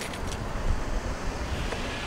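Wind on the microphone: a steady low rumble.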